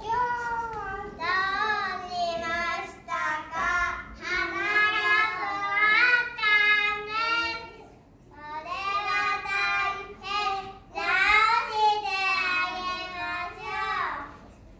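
A small group of young children singing together, with a short break about eight seconds in.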